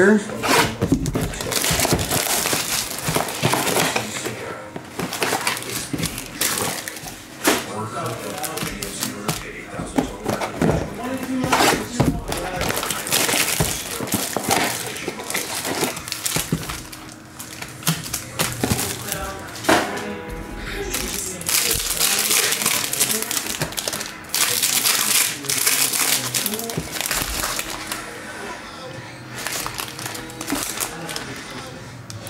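A cardboard trading-card box being torn open and its plastic-wrapped packs handled, with repeated tearing, crinkling and rustling and sharp clicks, over background music.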